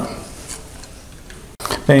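Grated mozzarella being scattered by hand over a pizza: a quiet room with only a few faint, light ticks. The sound breaks off abruptly about a second and a half in.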